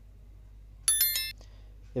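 A short electronic bell ding, a cluster of bright ringing tones lasting under half a second about a second in: the notification-bell sound effect of an animated subscribe-button overlay.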